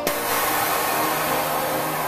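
A loud, steady hiss that starts suddenly, with faint music tones underneath.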